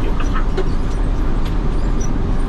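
Ambulance driving at road speed, heard from inside the cab: a steady engine and road rumble with tyre noise on wet pavement.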